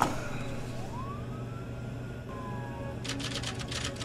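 A sharp hit, then a single siren wail that rises in pitch over about a second and a half, holds, and falls away, over a steady low drone. Near the end, a quick run of sharp clicks.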